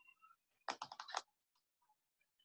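A quick run of five or six sharp clicks lasting about half a second, starting just under a second in, like keystrokes.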